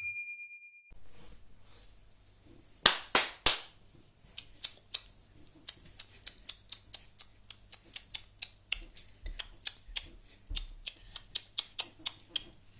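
A short notification-style chime at the very start, then a long run of sharp clicks and taps, several a second, with three loud cracks in quick succession about three seconds in.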